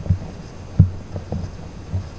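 Irregular dull low thumps over a steady low hum; the loudest thump comes a little under a second in.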